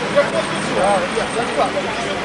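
Indistinct voices of people talking in a crowd outdoors, over a steady wash of street background noise.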